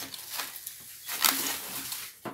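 Clear plastic wrapping rustling and crinkling as a plastic food container is handled, with a few sharper crackles, the loudest about a second and a quarter in.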